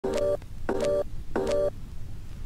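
Three short electronic beeps, evenly spaced about two-thirds of a second apart: a countdown jingle in an animated intro.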